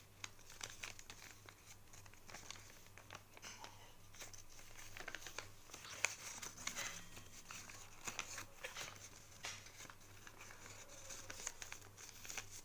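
A sheet of paper being creased and folded by hand, rustling and crinkling in irregular soft crackles, with one sharper crackle about halfway. A faint steady low hum runs underneath.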